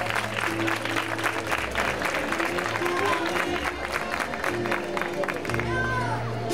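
Audience applauding over music playing through the stage sound system.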